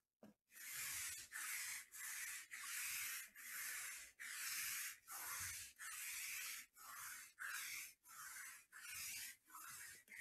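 Trading cards being handled on a tabletop: a faint run of short rubbing, sliding strokes, about two a second.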